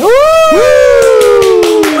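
Two voices calling a long, drawn-out cheer that slides slowly down in pitch, the second joining about half a second after the first, then hand clapping near the end.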